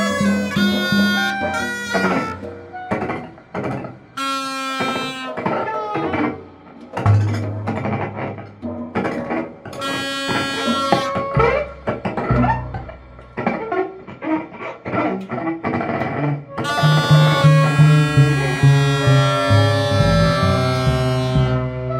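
Free improvisation by a small ensemble: bowed cello and electric upright bass with reedy held wind tones over them, in a dense texture with no steady beat. Near the end several held notes sound together and it grows louder.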